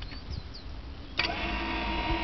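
Electric wheelchair winch of a converted Renault Kangoo starting about a second in and running with a steady motor whine, winding its strap.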